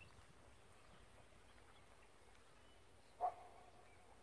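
Faint, scattered bird chirps over near silence, with one louder call about three seconds in: a sharp start that holds on one steady note for about a second.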